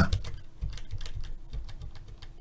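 Computer keyboard keys tapped in a quick, irregular run of light clicks.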